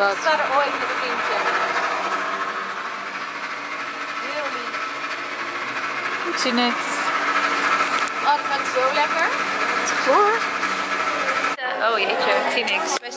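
Petrol station fuel dispenser running with a steady motor whine during refuelling, while a woman hums over it without words at intervals. Near the end the sound cuts off suddenly.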